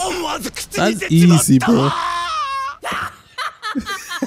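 A man laughing while Japanese anime dialogue plays, with a quick, wavering high-pitched voice a little past the middle.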